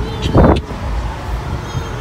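Steady low rumble of road and engine noise inside a moving car's cabin, with one short, loud bump about half a second in.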